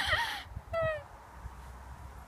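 A young woman's wordless vocal sounds: a short cry with gliding pitch at the start and one drawn-out falling 'ooh' just under a second in, then only a faint low rumble.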